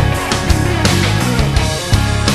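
Live country-rock band playing loudly over a stadium sound system, an instrumental stretch with a steady, hard-hit beat.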